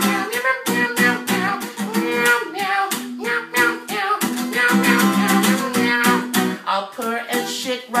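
Acoustic guitar strummed in a steady rhythm, with a man's voice singing over it.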